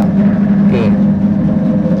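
Electric motor and belt-and-gear drive of a 15 kg stainless-steel dough mixer (MKS-HDM 15) running with an empty bowl, turning the mixing arm. It makes a steady hum.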